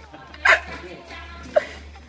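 Two short vocal sounds from a person: a sharp, falling burst about half a second in and a brief small blip about a second and a half in, between stretches of quiet.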